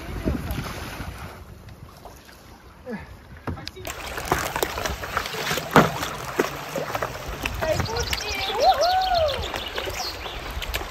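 Fast, swollen river water rushing with paddle splashes, quieter at first and then busier with splashing after a sudden change about four seconds in. Near the end a short voice call rises and falls in pitch.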